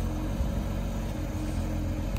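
Porsche 992 GT3's 4.0-litre flat-six idling steadily.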